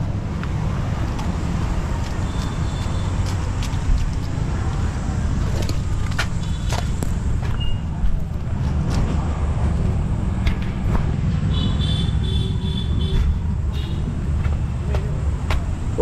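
A motor vehicle engine running steadily, with a low, even hum, and scattered light knocks and clicks over it.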